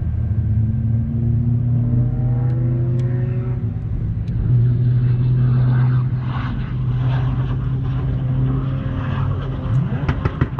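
4x4 engines running: a steady low engine drone, with revs rising in pitch in a few glides between about one and four seconds in as a vehicle accelerates, and a louder stretch around the middle.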